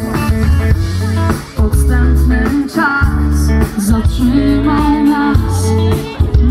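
Live pop-rock band playing loud, recorded from the crowd: heavy bass notes and guitar under a woman singing.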